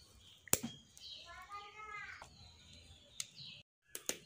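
A few sharp crackles from a wood fire burning in a clay chulha, heard faintly under a distant voice and bird chirps; the sound cuts out briefly near the end.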